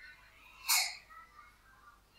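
A single short, sharp burst of breath from a person, a sneeze-like sound, just under a second in.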